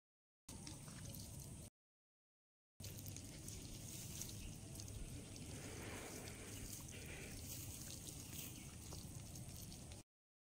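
Faint wet squelching of hands kneading chicken pieces in thick tandoori marinade in a steel tin, over a steady background hiss. The sound cuts out to dead silence twice in the first three seconds.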